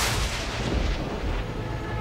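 A dramatic sound-effect hit on a TV soundtrack: one sudden loud boom-like crash that dies away over about a second into a low rumble.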